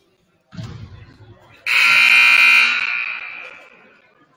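Gym scoreboard horn sounding loudly: it cuts in sharply a second and a half in, holds for about a second, then fades away in the hall, signalling the end of a timeout. A dull thump comes just before it.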